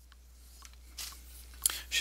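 Low electrical hum fading up, with soft ticks about twice a second, then two short noisy sounds, one about a second in and one near the end, just before the singing starts.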